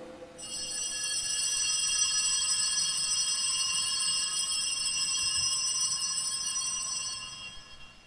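Altar bells ringing at the elevation of the consecrated host: a high, steady ring that starts about half a second in and fades out near the end.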